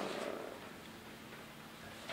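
Faint room tone in a pause between speech, with a low steady hum.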